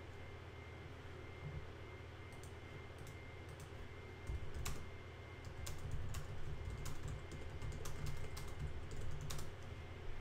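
Typing on a computer keyboard: scattered key clicks, sparse at first and coming thicker from about four seconds in, over a low steady hum.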